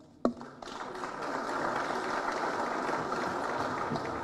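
Audience applauding: a steady wash of clapping that builds within the first second and holds, just after a single sharp click.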